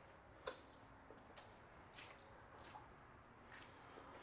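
Near silence: room tone with a few faint, short ticks, the clearest about half a second in.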